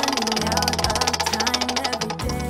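Background music with sustained low notes and a rapid, even ticking laid over it, as a prize-wheel spin effect.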